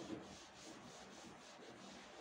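Cloth wiping chalk off a blackboard: faint, quick back-and-forth rubbing strokes, about four or five a second.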